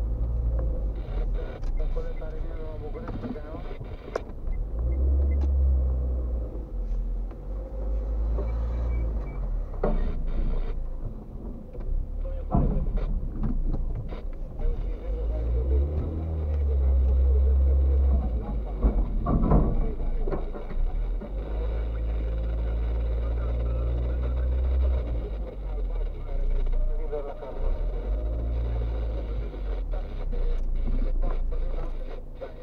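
Low engine and road rumble heard from inside a car's cabin as it creeps along slowly and then sits idling, with a few short knocks and clicks.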